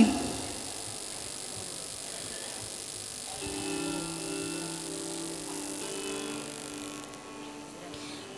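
Faint background music under the ceremony, with a few held notes in the middle.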